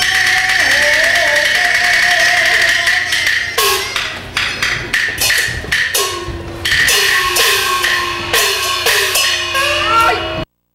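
Beijing opera percussion band accompanying a stage fight. A sustained melodic line from the orchestra gives way about three and a half seconds in to rapid sharp clapper and drum strokes, punctuated by repeated gong strikes whose tone slides down in pitch after each hit, typical of the large opera gong.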